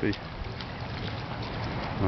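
Water sloshing and rushing as an American shad is swished back and forth in shallow river water to rinse off its scales, with wind rumbling on the microphone.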